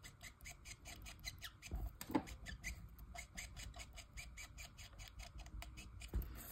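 Olo marker tip flicked in quick short strokes across card stock: a faint, rapid scratching, about five or six strokes a second.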